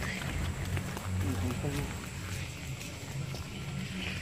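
Low steady rumble of wind on the phone's microphone as it is carried along an open road, with a faint voice for a moment about a second in.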